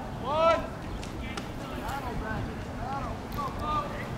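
Shouted calls across a baseball field: one loud drawn-out shout right at the start, then a few shorter, fainter calls over the last two seconds, above steady outdoor background noise.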